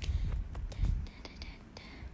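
A woman whispering softly close to a phone microphone, with low bumps against the mic early on and hissy, breathy sounds in the second half.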